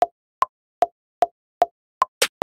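A software metronome ticking in the music program during playback, about two and a half short pitched clicks a second, with every fourth click higher, marking the first beat of each bar.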